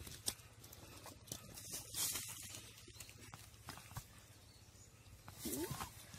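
Komodo dragon feeding on a deer carcass: scattered knocks and clicks and a rustling, tearing stretch as it pulls at the body on the leaf litter. Near the end a louder burst with a short call gliding in pitch.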